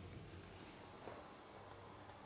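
Near silence: faint room tone with a weak steady low hum.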